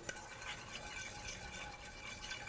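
Faint stirring of simmering fish broth and olive oil with a wooden spatula in a saucepan, working them together into an emulsified oil sauce.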